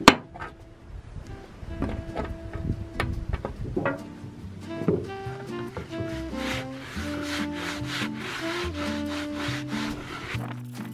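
A rag being rubbed in repeated strokes along a wooden plank, working dark wood oil into the grain. A sharp knock comes right at the start, and background music with held notes plays throughout.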